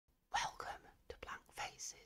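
A whispered voice: a few short breathy syllables in quick succession, faint.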